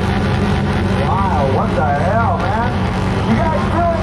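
Loud live concert sound over a stage PA: a steady low drone, with a pitched sound swooping up and down several times from about a second in.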